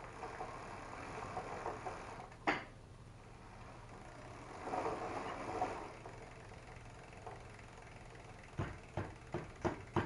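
Faint handling of a bicycle and a hand tool during a bolt check: a single sharp click about two and a half seconds in, a soft rustle around the middle, and a run of light, evenly spaced clicks, several a second, starting near the end.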